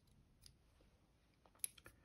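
Near silence broken by faint clicks: small fly-tying scissors snipping off the butt ends of the Coq de Leon tail fibres at the hook. There is one snip about half a second in and a few quick ones near the end.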